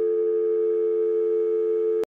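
Telephone dial tone: a steady, unbroken two-note hum on the line after the call has been hung up.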